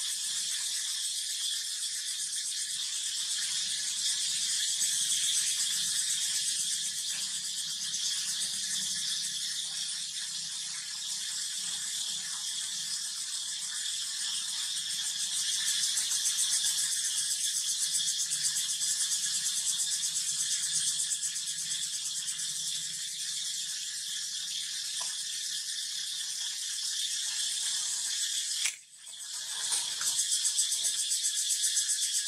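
Insects buzzing in a steady, high-pitched chorus with a fine rapid pulse, briefly cutting out just before the end.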